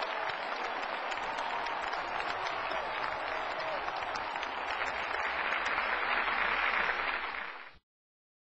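Audience applause: many hands clapping at once, swelling a little toward the end and then cutting off suddenly.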